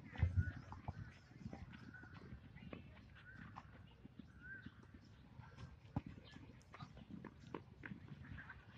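Scattered, uneven taps and knocks of relay batons striking a volleyball along an asphalt track, with a loud dull thump just after the start. Faint voices come and go in the background.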